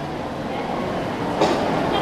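Microphone handling noise as a handheld microphone is passed from one person to another: a steady rumbling rustle through the PA, with a short louder knock about one and a half seconds in.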